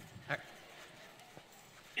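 A single short spoken word, then quiet room tone with one faint tap.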